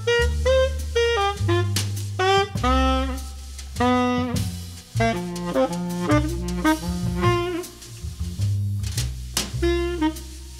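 Jazz tenor saxophone playing a ballad melody in flowing phrases and quick runs, over bass and drums with light cymbal strokes.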